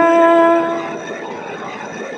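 A woman's singing voice holds the last note of a line of a Marathi ovi (traditional grinding-stone folk song) steady for about a second, then it fades into a short pause.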